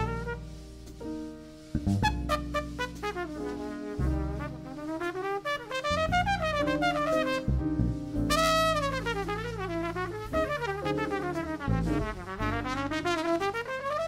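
Jazz trumpet solo: quick runs of notes swooping up and down, climbing to a high peak about halfway through, over the band's bass and drums.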